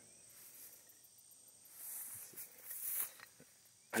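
Crickets or other insects chirring in a thin, steady high drone. About two seconds in there is a second of rustling through grass and pumpkin leaves.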